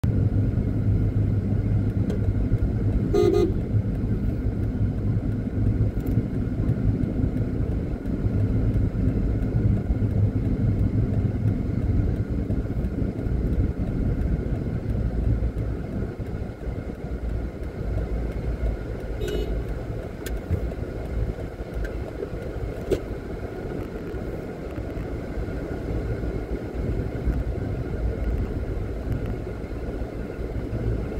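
A car driving along a street, with a steady engine and road rumble. A short car-horn toot sounds about three seconds in, and a fainter toot about nineteen seconds in.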